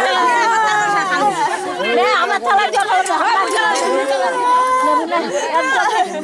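Several women's voices wailing and crying together in long, drawn-out, gliding cries, overlapping with talk: the tearful lament of a bride's farewell.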